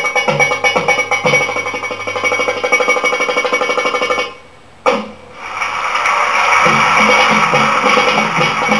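Middle Eastern percussion music for belly dance, a fast, driving drum rhythm. A little past halfway it breaks off suddenly into a brief pause, one sharp hit lands, and the music comes back in fuller.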